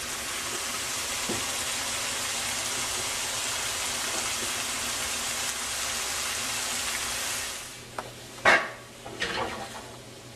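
Chopped celery, onion and scallion sizzling in oil in a hot skillet, a steady hiss that fades about seven and a half seconds in. Then three sharp metal clanks of pots and pans near the end.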